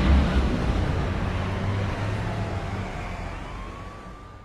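City-traffic sound effect fading out: a steady rumbling haze of traffic with a faint siren tone that slides down and then back up near the end, dying away steadily.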